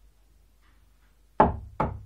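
Two knocks on a wooden door, about half a second apart, near the end.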